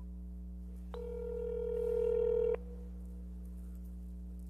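A single steady electronic telephone tone, about a second and a half long, starting about a second in, growing slightly louder and cutting off suddenly. It sounds as a remote participant's phone line is connected. A low steady electrical hum lies underneath.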